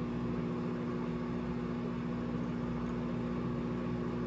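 RCA countertop microwave oven running, a steady hum.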